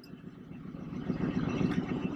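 Chevrolet Monte Carlo's engine idling with a low, steady rumble that grows louder as the microphone comes up to the car.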